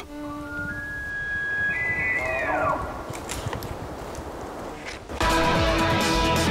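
Elk bugle: a high whistle that climbs in a few steps and then slides down, about one to three seconds in. Loud guitar music comes in near the end.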